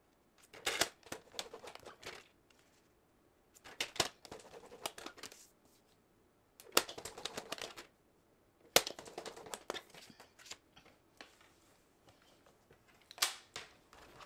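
Paper trimmer's scoring blade being drawn along cardstock, in about five short bursts of scraping with sharp clicks, a few seconds apart, as score lines are pressed in at each mark. The cardstock slides and taps against the trimmer between strokes.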